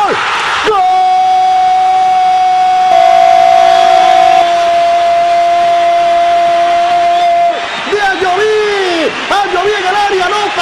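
A Spanish-language football commentator's long held "gooool" goal shout, one unbroken note for about seven seconds over crowd noise. Rapid excited commentary picks up again near the end.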